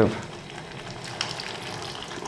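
Thick lentil dal bubbling and crackling in a stainless saucepan, with warm water poured in near the end; the dal has begun to stick to the bottom of the pan and the water is added to loosen it.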